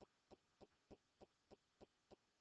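Near silence: room tone with faint, soft pulses repeating evenly about three times a second.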